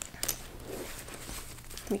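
Metal strap clip clicking as it is fastened onto the side hardware of a small quilted handbag: a couple of small sharp clicks near the start, then soft handling rustle of the bag.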